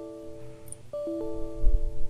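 Windows 10 error chime: the tail of one chime, then another about a second in, each sounding as a new 'access denied' error dialog pops up. A low thump near the end.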